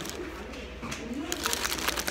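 A paper food wrapper crinkling as it is handled. The crinkling stops for about a second, during which a low hum-like voice sound rises and falls, then starts again.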